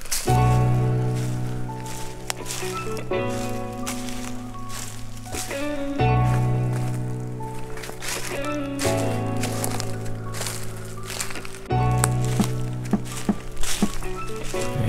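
Background music: sustained chords that change about every three seconds.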